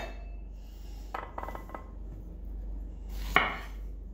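Light knife and utensil knocks as strawberries are cut and put into a container: a few soft taps about a second in, then one sharper knock just after three seconds, over a low steady hum.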